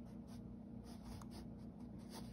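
Faint scratching of a pen on sketchbook paper in quick, repeated short strokes as a drawn line is darkened in.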